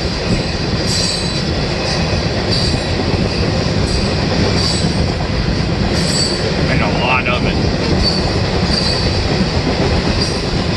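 A freight train's tank cars rolling past on the rails, a steady, loud rumble of wheels and cars. Short high-pitched squeals from the wheels come and go every second or so.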